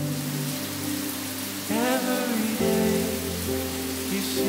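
Shower head running, a steady hiss of water spray, under background music.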